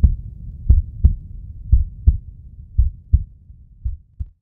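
A heartbeat sound effect: low double thumps (lub-dub), about one pair a second, fading toward the end.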